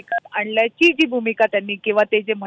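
Speech heard over a telephone line, with a brief two-tone keypad beep right at the start.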